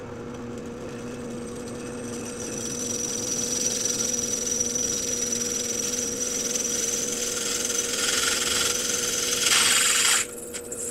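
Drill press running steadily as a carbide-tipped glass drill bit grinds through a hardened steel file, lubricated with oil. The cutting noise grows louder over the last several seconds and turns into a short, harsh burst near the end, as the bit punches through the file.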